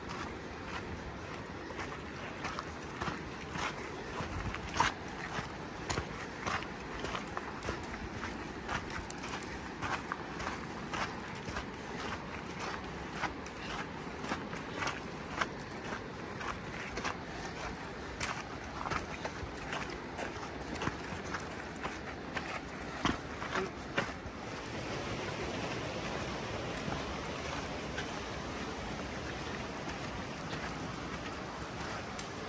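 Footsteps crunching on a rocky dirt trail with the sharp clicks of trekking-pole tips striking stone, about one to two a second. About 24 s in the clicks thin out under a steadier rushing noise.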